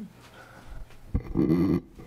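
A short, loud vocal sound from a person close to a microphone, lasting about half a second and coming about a second and a half in, just after a soft knock.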